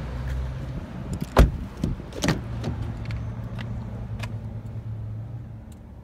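Car door hardware clicking: a sharp latch click about a second and a half in, the loudest sound, and a second click about a second later, followed by a steady low hum.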